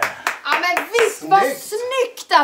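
Short excited voice exclamations with a few scattered hand claps.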